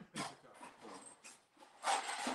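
Faint, breathy laughter in a few short bursts.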